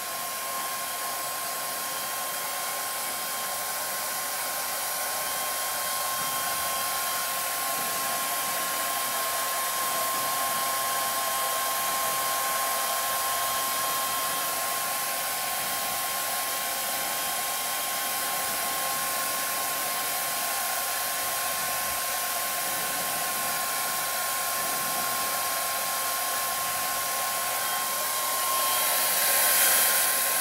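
Handheld hair dryer blowing steadily as she dries her hair and bangs, a constant rushing hiss with a thin steady whine; it gets a little louder near the end.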